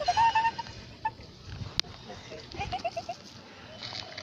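Cat meowing, perhaps begging for food: one drawn-out meow at the start and a short one about a second in, then a quick run of four short chirps near the three-second mark.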